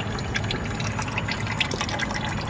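Old engine oil draining in a steady stream from the oil pan's drain-plug hole and splashing into a plastic catch pan, with scattered small spatters.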